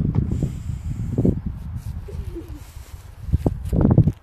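Wind rumbling and buffeting against a phone's microphone while walking, rising and falling, with two short louder bursts, about a second in and near the end.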